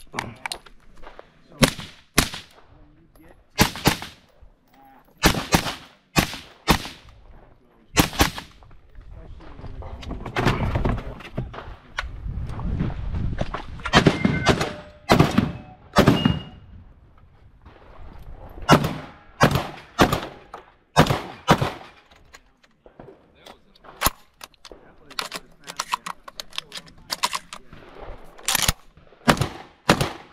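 Gunshots in quick irregular strings and pairs, the later ones from a Mossberg 930 semi-automatic 12-gauge shotgun fired at steel and clay targets, with a stretch of dense rustling and handling noise around the middle.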